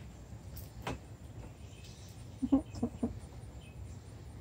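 A single short click about a second in, from a leash clip being fastened to a cat's harness, over a steady low outdoor rumble.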